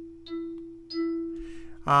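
Orphion iPad app's synthesized pad tone: the E4 pad tapped repeatedly with more of the fingertip, giving a drippy articulation. The same note is struck again about a quarter second in and about a second in, each time ringing on and fading away.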